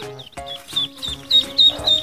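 Chicks peeping over background music: a string of short, high, falling peeps, about three or four a second, getting louder in the second half.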